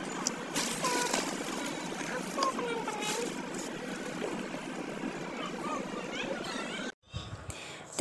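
Background hubbub of indistinct voices over a steady outdoor noise bed. It cuts off abruptly about seven seconds in.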